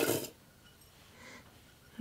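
A small metal tea container being opened: a brief metallic scrape and clink right at the start, then a faint rustle of loose tea tipped into the glass mug's infuser a little past the middle.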